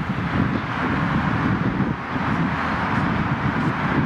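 Wind buffeting the microphone outdoors: a rough, fluttering low rumble over a steady hiss.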